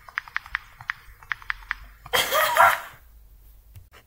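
A string of light, irregular clicks, then about two seconds in a short, loud burst from a person's voice.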